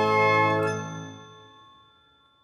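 Closing sting of an advertising jingle: a sustained chord ringing on, with a higher note joining about half a second in, then fading away to silence over about a second and a half.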